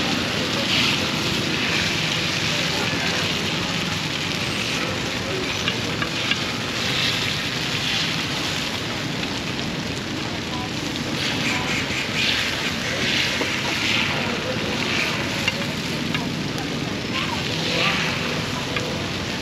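Num kruok (Khmer coconut rice cakes) sizzling in round dimpled molds over a fire, under a steady din of street traffic and voices.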